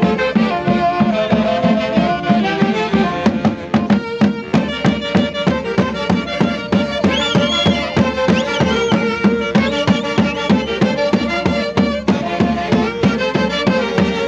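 Saxophone band with bass drums playing a Santiago festival dance tune: several saxophones carry the melody together over a steady, even drum beat.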